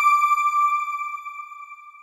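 A single bright electronic chime ringing on one high note and fading away slowly, the sound logo that closes the news report.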